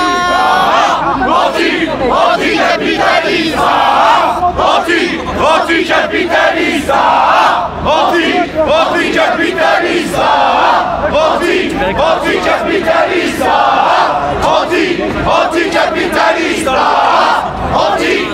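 A crowd of protesters shouting and chanting together, loud, in group bursts that swell every few seconds.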